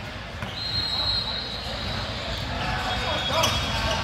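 Basketball gym ambience in a large hall: background chatter and a basketball bouncing. A thin, steady high tone runs from about half a second in for about two seconds, and a sharp knock comes a little past three seconds.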